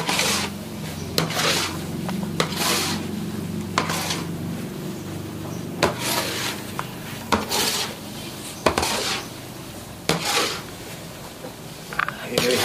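Long wooden paddle scraping and stirring a thick, sticky wajit mixture of coconut and sugar in a large metal wok. The strokes repeat about every second and a half, each a rasping scrape with the odd knock of the paddle against the pan.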